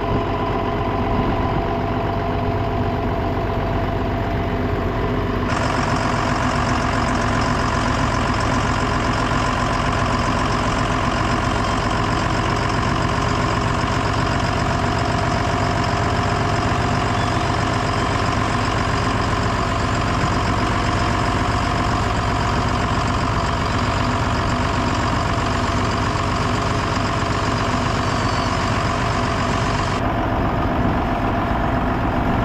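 A John Deere loader tractor's diesel engine running steadily, heard from the operator's seat. About five and a half seconds in the sound turns suddenly brighter and harsher in its upper range.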